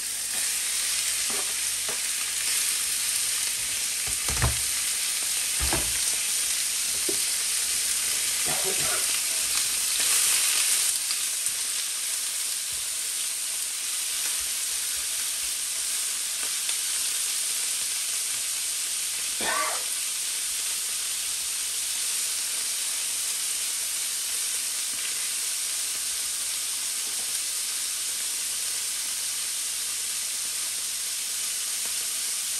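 Diced wild boar meat sizzling steadily in a hot frying pan, with a few knocks and scrapes of a spatula as it is stirred.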